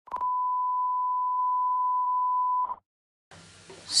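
Steady high-pitched test tone, one unbroken beep of about two and a half seconds that starts and cuts off abruptly: the broadcast 'technical difficulties' signal.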